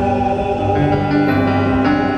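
Mixed choir of men's and women's voices singing in harmony, holding chords that shift a couple of times.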